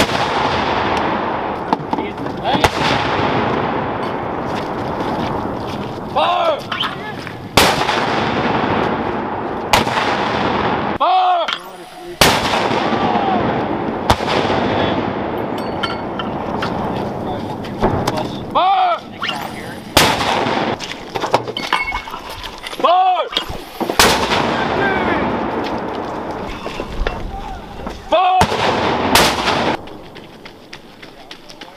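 Mortars firing in a series of about ten rounds. Each shot is a sharp report followed by a long rolling echo that fades before the next.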